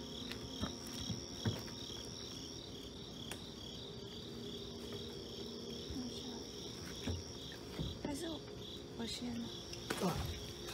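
Night insects calling: a steady, high pulsing trill, with a second steady high tone that stops about seven seconds in. Scattered light knocks and handling sounds are mixed in.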